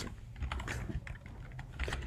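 A few faint keystrokes on a computer keyboard as a line of code is typed.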